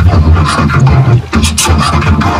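A loud jumble of several overlapping logo and cartoon audio tracks played at once: music and sound effects over a heavy bass hum, cut up by quick scratch-like stutters.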